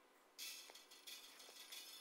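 Near silence: faint room tone, with a light high hiss and a few faint clicks coming in about half a second in.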